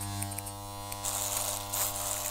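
Electric hair clipper buzzing steadily, with a hiss that swells about a second in.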